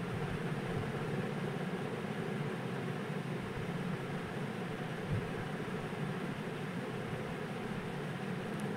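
Steady, even background noise with one faint tap about five seconds in.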